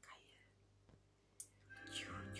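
Near silence, with a faint breathy whisper at the start and a single short click about one and a half seconds in; music comes in just before the end.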